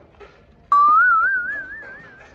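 A single loud whistled note that starts suddenly, rises slowly in pitch with a fast, even wavering, and fades over about a second and a half.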